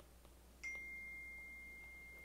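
Faint ticking of a stylus writing on an iPad screen. About half a second in, a click sets off a single high, pure ringing tone that slowly fades.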